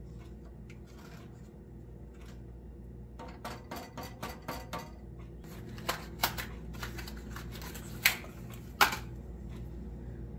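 Light clicks and knocks from a wooden spoon stirring in a stainless steel saucepan of borax solution and from small kitchen items being handled, a few sharper knocks in the second half, over a steady low hum.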